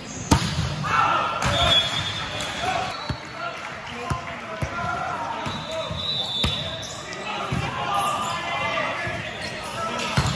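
Volleyballs being struck and bouncing in a large gym: sharp slaps at irregular intervals, the loudest just after the start, over background chatter and shouts from players and spectators.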